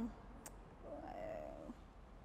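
A faint, short closed-mouth hum from a woman pausing to think before she answers, after a small click about half a second in.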